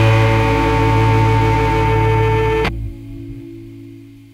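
Loud guitar rock band music that stops abruptly about two and a half seconds in, leaving a low chord ringing and fading away.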